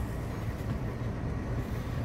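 Steady low outdoor rumble with no distinct events, the kind of background noise that carries in a parking lot.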